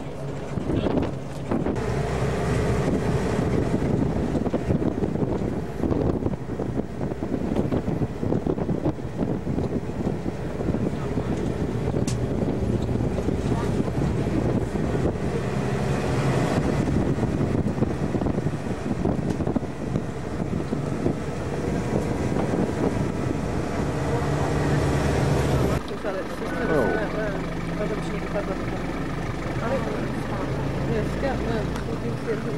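A game-drive vehicle's engine runs steadily, with wind on the microphone. About 26 seconds in, the engine note drops suddenly, as when the vehicle slows or settles to idle.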